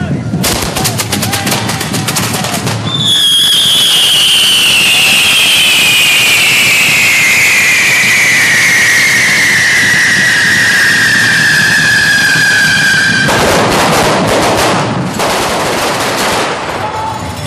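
Correfoc fireworks: a burst of rapid crackling bangs, then a loud whistle that falls steadily in pitch for about ten seconds. More fast crackling follows near the end.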